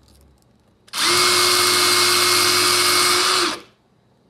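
Handheld electric pencil sharpener's motor running loud and steady with a constant whine while grinding a pencil, starting about a second in and cutting off abruptly after about two and a half seconds.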